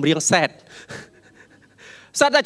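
A man's voice speaking into a handheld microphone stops about half a second in, followed by a short pause filled with faint breath noise into the microphone, with an intake of breath near the end.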